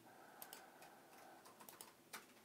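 Near silence with a few faint computer clicks, typical of keys or a mouse being pressed to work the presentation.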